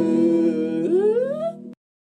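Closing acoustic guitar chord ringing under a held vocal note, which slides upward in pitch about a second in; the sound then stops abruptly, ending the song.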